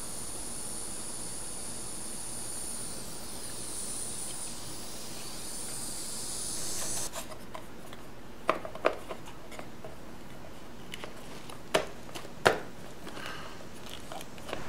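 Hands working on motorcycle ignition wiring. A steady high hiss runs for about the first seven seconds, then come a few light clicks and knocks as the plastic CDI boxes and their wires are handled.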